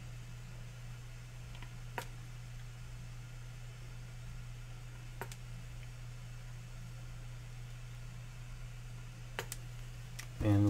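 Steady low hum with a few faint, sharp clicks as a plastic squeeze bottle of acrylic paint is handled against a plastic ice cube tray, with a quick pair of clicks near the end as the bottle is set down.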